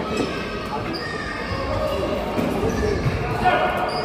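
Volleyball rally in an echoing indoor gym: the ball being struck with sharp slaps amid players' and spectators' voices.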